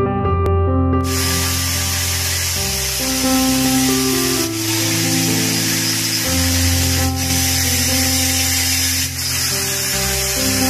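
Angle grinder cutting through welded iron wire mesh: a harsh hiss that starts suddenly about a second in and dips briefly a few times, over background music.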